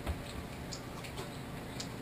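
Quiet room tone with a few faint, irregularly spaced ticks and clicks.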